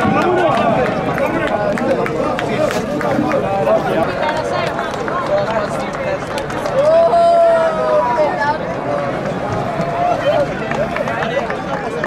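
Players' voices on a football pitch at full time: overlapping shouts and chatter as the winning team celebrates, with one long, drawn-out call about seven seconds in.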